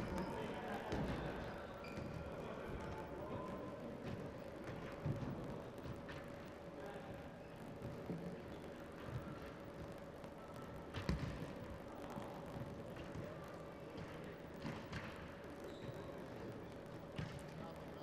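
Echoing sports-hall ambience with faint, indistinct voices, a few ball thuds on the wooden floor (the loudest about eleven seconds in), and a steady faint hum underneath.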